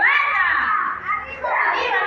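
High-pitched voices shouting and cheering encouragement, with no clear words.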